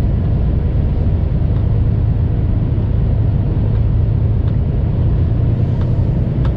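Semi truck's diesel engine and drivetrain heard from inside the cab as it rolls slowly: a steady low drone with no change in pitch.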